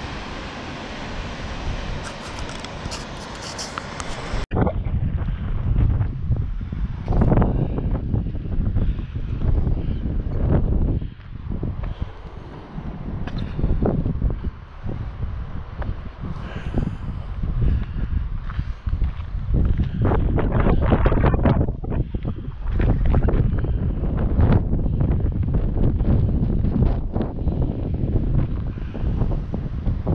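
Wind buffeting the camera's microphone in irregular gusts, low rumbling blasts that rise and fall, starting suddenly about four seconds in. Before that there is a steady, even rushing noise.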